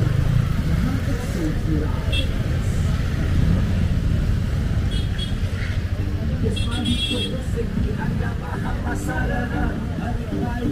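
Busy street ambience: motorcycle and scooter engines running and passing close by, over a steady low rumble, with people's voices in the crowd.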